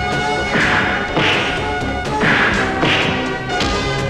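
Dubbed film fight sound effects: about four hard punch hits with swishes, roughly a second apart, over a background music score.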